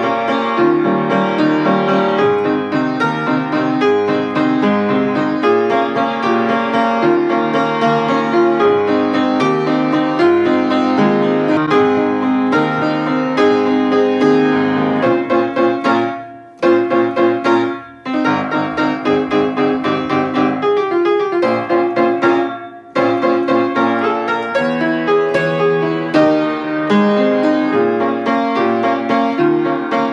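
Upright piano, its front panel off, played solo: a lively tune in a steady rhythm that stops for short breaks three times about halfway through.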